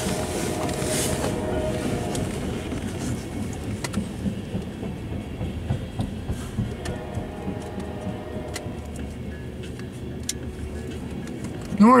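A freight train of tank cars rolling slowly past, a steady rumble with a few faint wheel clicks, heard from inside a vehicle.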